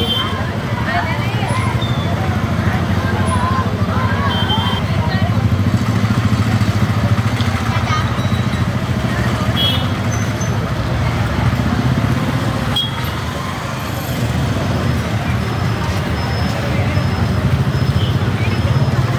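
Street noise: many voices talking over a steady low hum of vehicle engines, with the voices plainest in the first few seconds.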